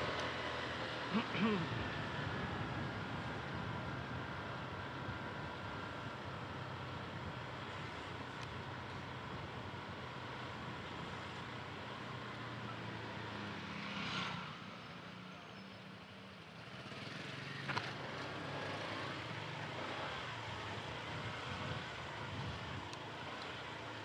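Motorcycle engine running at low speed while the bike rolls slowly, with a steady low hum. Just past halfway the engine note drops for a couple of seconds, then picks up again.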